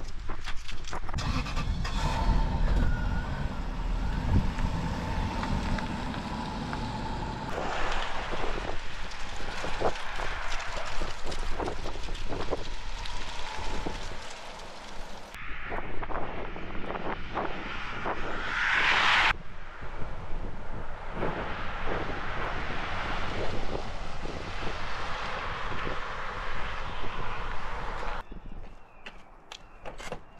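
1995 Lexus LS400 car with its V8 setting off and driving. Later the car comes up the road and passes by, its road noise swelling to a peak and then cutting off abruptly.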